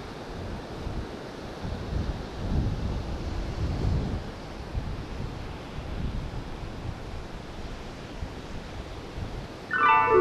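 Ocean surf washing on the rocks below a coastal headland, with wind gusting on the microphone; the gusts ease in the second half. Music starts just before the end.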